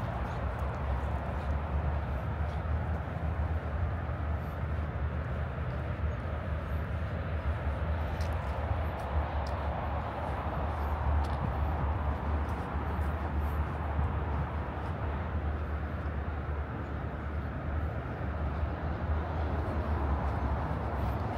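Steady outdoor urban ambience: a continuous low rumble like distant traffic under a broad, even hiss, with a few faint ticks.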